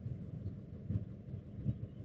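Low, uneven rumble of wind buffeting the microphone inside a stationary car.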